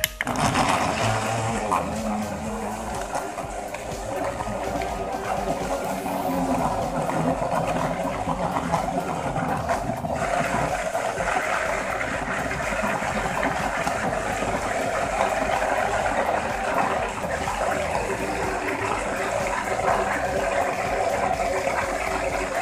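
Small battery-powered motor of a USB rechargeable portable bottle blender switching on with a click and running steadily, its blades churning banana, oats, peanut butter and water into a smoothie.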